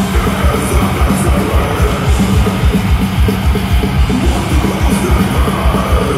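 Death metal band playing live through a large PA: heavily distorted electric guitars over rapid, pounding kick-drum beats, loud and unbroken.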